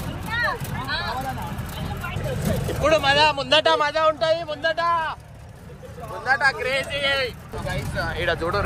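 A jeep's engine and tyres rumbling steadily as it drives over a rough, rocky dirt track, with people's voices calling out loudly over it twice, in the middle and near the end.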